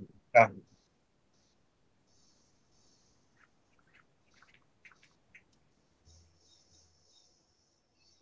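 A man says "yeah", then near silence: room tone with a few faint short ticks in the middle.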